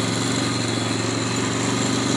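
Small engine running steadily at an even speed, heard from on board the vehicle as it moves across grass.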